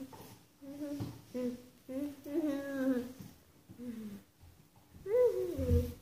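A young girl humming in short wordless phrases with closed lips, each a second or less, with brief pauses between them. The pitch slides up and down, and the last phrase near the end swoops down.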